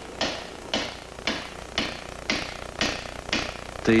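Hand hammer striking a single metal plate as it is worked into a helmet skull, at a steady rhythm of about two ringing blows a second.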